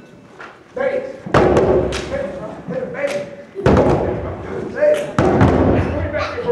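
Group of djembe drums struck by hand, starting with a few scattered beats about a second in and building into dense, overlapping strikes after the middle, with a voice calling out between the beats.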